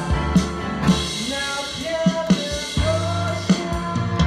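A live band playing: a drum kit keeping a steady beat of regular hits, with bass and keyboard.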